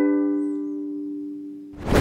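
A G major chord strummed once on a ukulele, ringing and slowly fading. Near the end the ringing stops short and a brief rush of noise follows.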